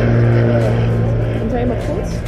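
A steady, low engine hum that fades out near the end, with faint voices in the background.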